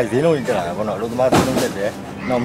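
A man speaking Burmese in conversation. There is a short, loud burst of noise about a second and a half in.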